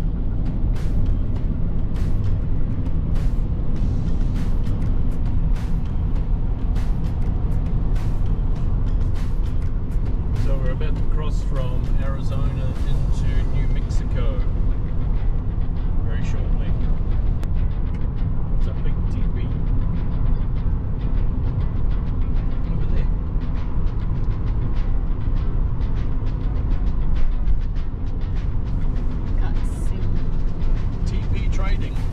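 Road and wind noise inside a Honda SUV cruising at highway speed: a steady low rumble with frequent small buffets and knocks.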